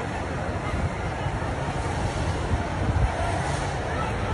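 Steady rough rumble of wind buffeting a phone's microphone outdoors, with faint distant voices under it.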